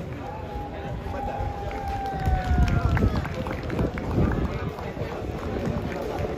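Voices on the sideline of a rugby field over a low rumble. One long held call, falling slightly in pitch, lasts nearly three seconds from just after the start.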